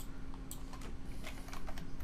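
Typing on a computer keyboard: a quick, uneven run of key clicks as a short word is typed into a text field.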